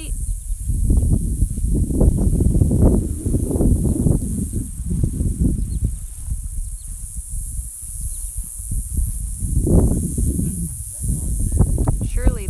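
Wind buffeting the microphone as a low, gusty rumble that swells and fades, strongest about a second in and again near the end. A faint, steady high hiss of insects runs underneath.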